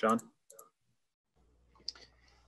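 A single spoken word, then a few short, sharp clicks, with a faint low electrical hum coming in about a second and a half in.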